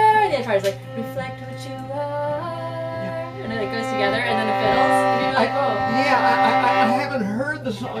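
Fiddles playing a slow outro in held, bowed notes that step and slide between pitches, with a wordless sung 'ah' drawn out over them.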